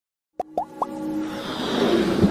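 Sound effects of an animated logo intro: three quick rising bloops, then a whooshing swell that builds steadily louder.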